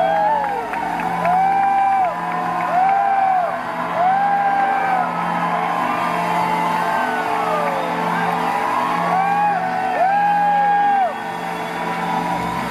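Live band music with a voice singing short held notes over and over, each swooping up into the note and dropping off at its end, over a steady bass line.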